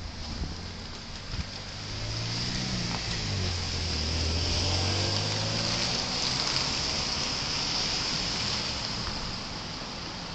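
A car driving past close by: its engine and tyre noise swell, are loudest around the middle, then fade away.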